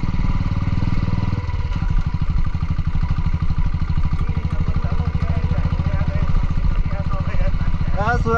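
Motorcycle engine running steadily under way, heard from the rider's seat: a low, even beat with no change in pitch.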